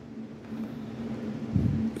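Steady low background hum, with a brief low sound about a second and a half in.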